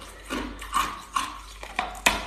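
Teeth biting and crunching into a large block of ice: a run of about five sharp, crackly crunches as pieces break off.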